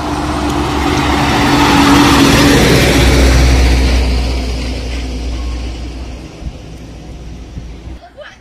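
A loaded light truck drives past close by. Its engine grows louder to a peak about two seconds in, then fades away as it recedes.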